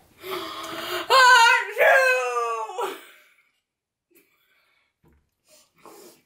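A woman's drawn-out moaning whine of disgust after tasting awful food, about three seconds long: a strained start, then a louder wavering cry that falls away.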